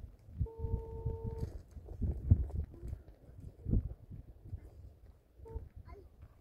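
Mobile phone ringback tone playing from the phone's speaker while a call waits to be answered: one steady beep about a second long near the start, and the same tone again briefly near the end. Low rumbling noise runs underneath, loudest in the middle.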